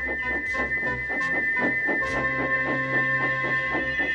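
Background music with a quick, even beat, over a steady high-pitched steam locomotive whistle held on without a break: the whistle valve is stuck open.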